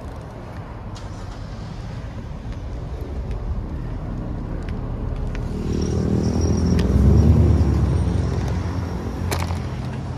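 Street traffic: a car passes close by, its engine and tyre noise swelling to a peak about seven seconds in and then fading, over a steady traffic rumble.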